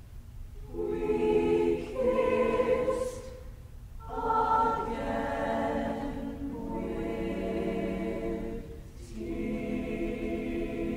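Mixed SATB choir singing a cappella: slow, sustained chords in short phrases with brief breaks between them, ending on a long held chord.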